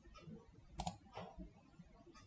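Two faint, sharp clicks at a computer, about 0.4 s apart near the middle: mouse and keyboard clicks while switching between code files.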